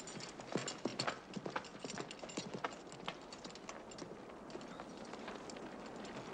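Hoofbeats of ridden cavalry horses moving at pace over grassy ground. The irregular clatter is busiest in the first half and thins out after about four seconds.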